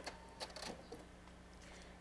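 Near silence with a few faint clicks and rustles of a paper-backed quilt block being handled, at the start and about half a second in. The sewing machine is not running.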